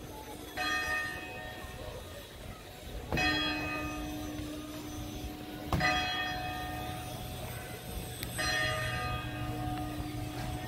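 A large church bell tolling slowly: four strokes about two and a half seconds apart, each ringing on and fading before the next.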